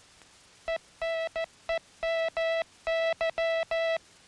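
Morse code sent as a steady keyed tone: a dit, a dah, two dits, three dahs, a dit and two more dahs, spaced to spell ENEMY (. -. . -- -.--) instead of LOW. It starts about a second in.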